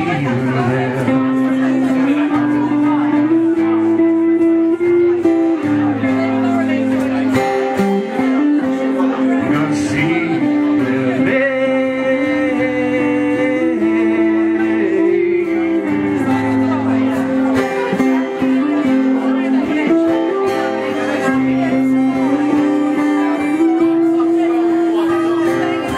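Live acoustic guitar and electric guitar playing an instrumental passage of a folk-blues song, the electric guitar holding a sustained melody that steps between a few notes over the acoustic guitar's rhythm.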